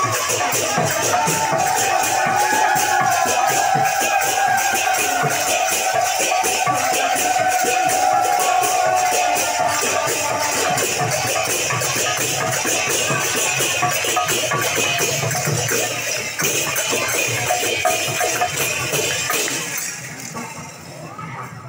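Devotional kirtan music: small brass hand cymbals (gini) clash in a fast, steady rhythm, with a held melodic line sounding above them over the first half. The music drops away at the very end.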